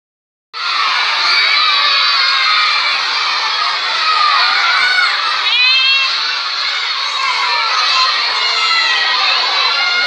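A large crowd of schoolchildren all shouting and chattering at once: a loud, continuous din of many high voices. About five and a half seconds in, one shrill voice rises in pitch above the rest.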